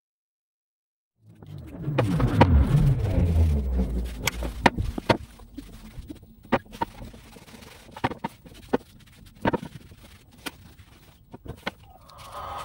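After a second of silence, a low rumble for about three seconds, then a run of sharp knocks and taps spaced out over several seconds as wooden cabinet doors are handled and set down on a glass table top.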